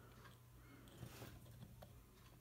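Near silence: room tone with a faint low hum and a couple of faint ticks, about a second in and near the end.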